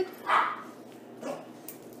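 A dog gives one short bark about half a second in.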